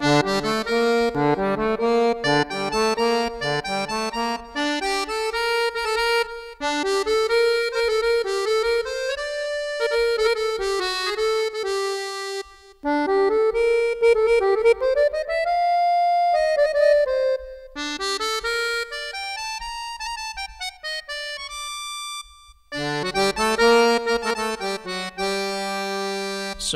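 A sampled accordion (a Kontakt virtual instrument of a Guerrini accordion) played from a keyboard while its registers are switched through. A bouncing bass-and-chord accompaniment comes first, then a melody line alone, broken by a few short pauses.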